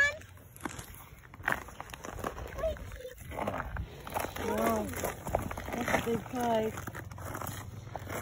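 Faint, distant voices talking, with a few soft knocks and rustles of clothing and handling early on.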